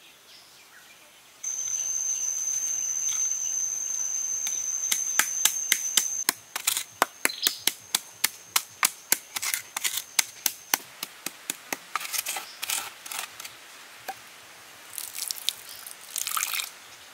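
Charcoal being crushed in a small clay bowl with a pole used as a pestle: a run of sharp strikes at about three a second for some six seconds, over a steady high-pitched buzz. Near the end, water is poured into the bowl.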